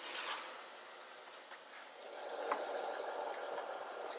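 Faint steady background noise with a single light click about two and a half seconds in.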